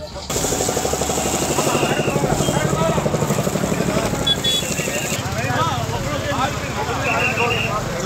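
An engine running steadily under the hiss of a fire hose jet spraying water, with men's voices in the background; the hiss drops away about five seconds in.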